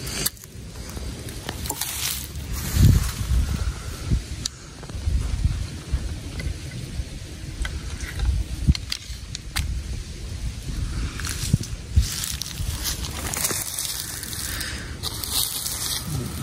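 Wind buffeting the microphone in a low uneven rumble, with rustling and crunching of dry fallen leaves underfoot and scattered small clicks and jangles of handled gear.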